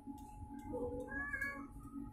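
A domestic cat meowing once, a single call about a second long in the middle.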